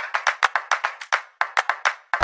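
Quick, rhythmic hand-clap percussion with no bass under it, about seven claps a second with a brief break just past the middle; a music or sound-effect track laid over the footage.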